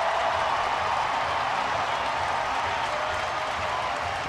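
Large baseball stadium crowd cheering and applauding steadily for a home-team triple.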